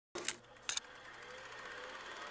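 Quiet opening of the recorded song: two short sharp clicks, then a faint hiss that slowly builds, with a thin tone rising slightly beneath it, before the music comes in.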